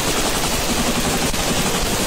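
A loud, unbroken rattle of rapid, overlapping shots, like sustained automatic gunfire from several guns at once.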